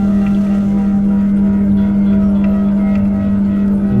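A sustained ambient musical drone holding one low note with a rich set of steady overtones.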